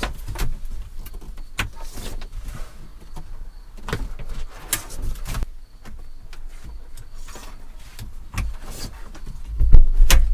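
Homemade fabric window curtains in a van being unhooked and let roll up one after another: scattered clicks and knocks of the small hooks and the fabric rustling, with a heavier thump near the end.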